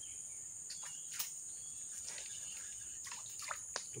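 Steady high-pitched drone of insects in swamp forest, with a few short sharp clicks and chirps scattered through it.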